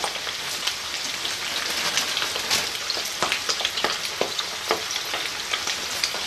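Marinated chicken wings deep-frying in hot oil in a pan: a steady sizzle with frequent sharp crackles and pops.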